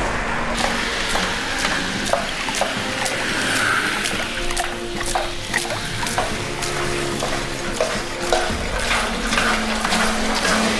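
Water pouring and splashing from a hose as a steel drum fills to overflowing, under background music, with short metallic clicks as the drum's top fitting is handled.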